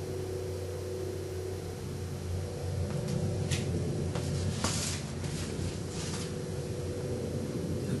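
Bristle brush laying oil paint on canvas: a few short scratchy strokes about halfway through, over a steady low hum.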